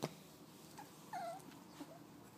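A puppy giving two short, faint whimpers about a second in, one lower and dipping, one higher. A soft knock sounds right at the start.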